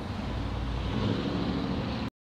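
Steady outdoor road-traffic noise: a low, even rumble of nearby cars.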